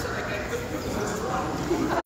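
Indistinct overlapping voices of people talking in a large, echoing hall, with no music playing.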